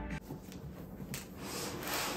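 A large cardboard box scraping against a wooden desk as it is handled, a rough rubbing noise that swells near the end.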